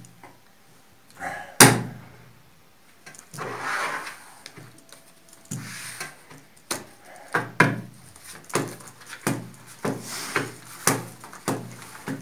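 Playing cards being dealt onto a tabletop, each card landing with a sharp tap, about two a second through the second half. One louder knock about a second and a half in, and a short rustle of the cards a little after.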